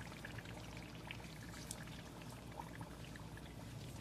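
Battered onion rings deep-frying in a pan of hot oil: a faint, steady sizzle with scattered small crackles as the batter browns to a crisp in the last stage of frying.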